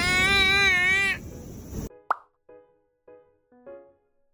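A baby's drawn-out, wavering squeal lasting about a second, over outdoor background noise that cuts off suddenly just before halfway. Then a single pop sound effect and a few soft, separate piano notes.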